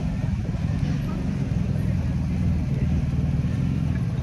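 A motor vehicle's engine idling: a steady low rumble that keeps an even pulse and does not change.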